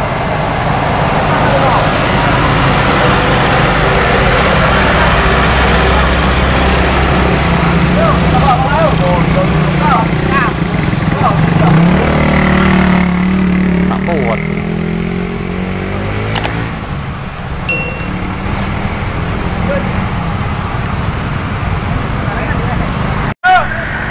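Vehicle engines labouring up a steep climb: a low, steady drone whose note changes about halfway through, then rises and falls. People are shouting over it.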